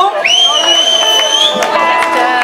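A loud whistle that slides up and then holds on one high note for over a second, over crowd noise and voices.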